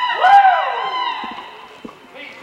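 A long whoop from a spectator cheering the horse's run, its pitch sweeping up and then sliding down over about a second, over a steady hum; a few soft thuds near the end.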